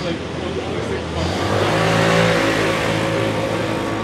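A car engine speeding up as the car pulls away close by, with tyre noise on cobblestones. It swells to its loudest about two seconds in, then eases off.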